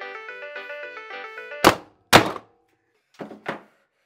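A bright tune plays, then two hard thunks about half a second apart, a hand striking a digital alarm clock, and the tune stops dead at the second blow. Two lighter knocks follow about a second later.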